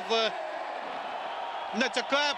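Steady stadium crowd noise from the football broadcast, filling a gap of over a second between the commentator's words, which end just after the start and resume near the end.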